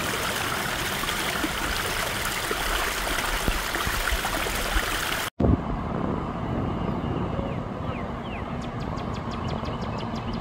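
Shallow floodwater running fast along a sidewalk, a steady rushing of water. After a sudden cut about halfway, the sound drops to a quieter background with a low steady hum and a few faint chirps.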